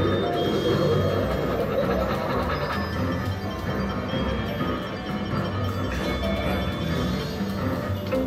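Wolverton video slot machine playing its spooky free-spins bonus music with chiming reel-spin sounds, as two free spins are played out.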